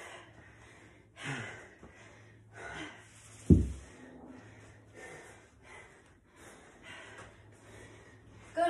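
Heavy breathing with short, sharp exhales every second or so, as from recovering after a hard set of exercise reps. About three and a half seconds in there is one loud, low thud, like a weight being handled on the floor mat.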